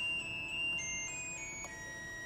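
Classical music playing at low volume from a car's digital radio: long held notes that change pitch a few times.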